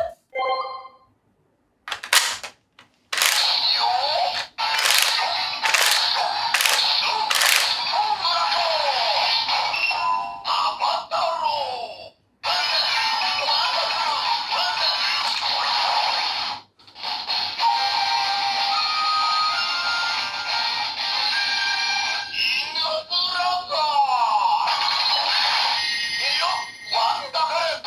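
DX Don Blaster toy gun playing its electronic transformation sounds through its small built-in speaker: a few clicks, then a jingle with recorded voice calls such as "Wonderful!" and "Inu Brother!". The sound is thin and tinny, with almost no bass.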